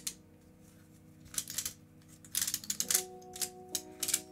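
Plastic skewb shape-mod twisty puzzle being turned and shifted by hand: clusters of quick plastic clicks about a second and a half in and again from about two and a half seconds on, over quiet background music with long held notes.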